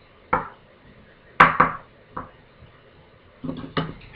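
A metal spoon knocking and clinking a few times, sharp separate strikes in the first half, while melted white chocolate is scooped and spread onto a plastic strip, followed near the end by a short run of softer handling noises.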